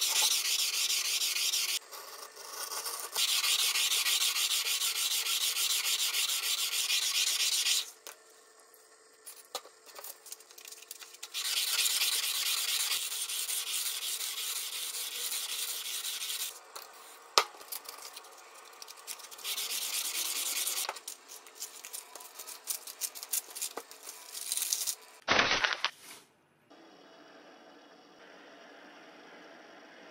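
120-grit sandpaper rubbed by hand over the flat of a steel deba knife blade, taking off rust: fast back-and-forth scraping strokes in runs of a few seconds with pauses between. A short, louder sound comes about 25 seconds in.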